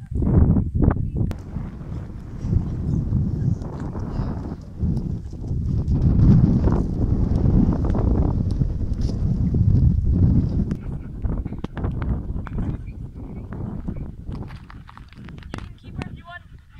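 Strong wind buffeting the microphone: a low rumble that swells and eases in irregular gusts.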